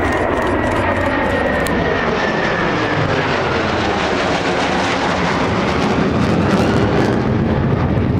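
Two military jet aircraft flying over: a loud rushing engine noise whose pitch slides steadily downward as they pass, swelling slightly near the end.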